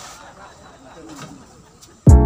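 Quiet outdoor background with a few faint, short pitched calls about a second in.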